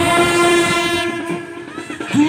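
Brass band of trumpets and euphonium holding one long note together, easing off in the second half.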